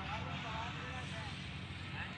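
Steady low engine hum, heard from a distance.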